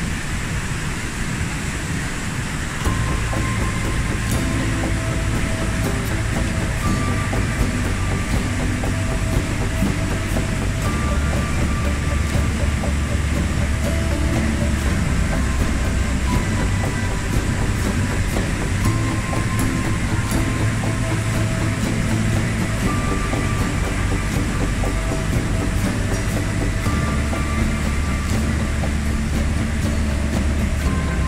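Glacial meltwater torrent rushing through a rock gorge: a steady roar of white water. Background music of slow held notes over a deep bass comes in about three seconds in and runs over it.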